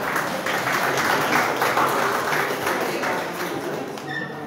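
An audience clapping: dense applause that swells about a second in and eases off near the end.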